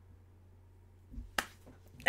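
Near silence, broken about a second and a half in by a soft thump and then a single sharp click.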